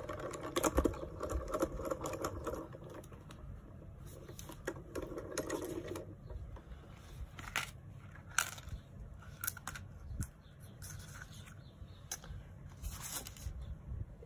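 Hand-cranked die-cutting machine turned to roll the plates through, running steadily for the first two and a half seconds and again briefly about five seconds in. After that come scattered sharp clicks and rustles as the plastic cutting plates and the cut cardstock are handled and pulled apart.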